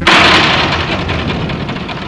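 A single artillery blast, sudden and loud, dying away in a rumble over about two seconds.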